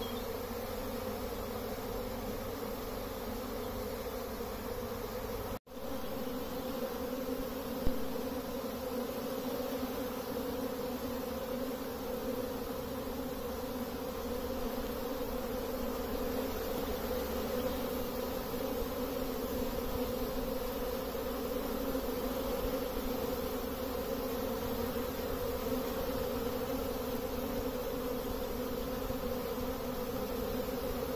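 Steady buzz of a great many honeybees flying around busy hive entrances. It drops out for an instant about five and a half seconds in.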